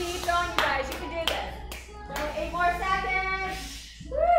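A person clapping their hands: several sharp claps, unevenly spaced, in the first two seconds, with a voice going on underneath.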